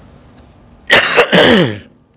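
A man clearing his throat loudly in two quick goes about a second in, the second sliding down in pitch.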